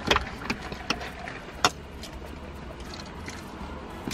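Eating sounds in a car: a taco being chewed and its paper wrapper handled, making a few short sharp clicks and crackles in the first two seconds. Under them runs a low steady hum.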